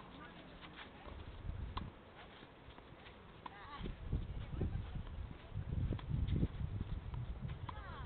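Tennis ball being struck with rackets during a rally, sharp pops a few seconds apart, over a low rumble that grows louder in the second half.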